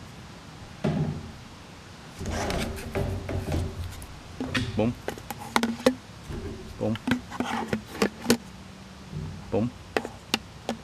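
Small gear and cables being packed into a large water bottle by hand: a run of irregular knocks, clicks and rubbing as the items slide and drop into it.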